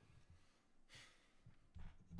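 Faint breathing close to a microphone, with an exhale about a second in and another breath shortly before the end.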